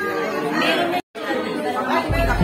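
Many people chatting at once in a large dining room, overlapping voices with no single speaker standing out, cut off by a brief silent gap about halfway through.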